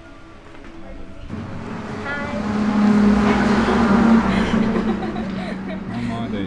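A motor vehicle passing close by on the road, with a steady engine hum that grows louder to a peak about three seconds in and then fades.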